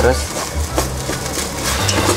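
A plastic rice paddle turning and scraping freshly cooked rice in a rice cooker's inner pot: a few soft scrapes over a low steady hum.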